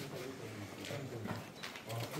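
Calves feeding on large green leaves held out to them: a few irregular, crisp crunches and knocks as they bite and pull at the leaves, over a low steady background hum.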